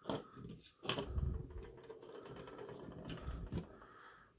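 Hard plastic Lego parts clicking and rubbing under the fingers as a toy truck's hook arm is fitted to a transparent plastic ball: a sharp click at the start and another about a second in, then quieter handling and rustling.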